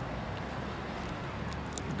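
Steady low background hum, with a few faint clicks near the end.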